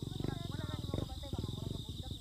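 Steady high chirring of night insects, likely crickets, under a few voices talking indistinctly, with a low rumble of handling or wind on a phone microphone.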